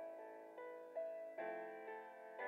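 Grand piano playing slow, soft chords under a melody, with a new note or chord entering about every half second.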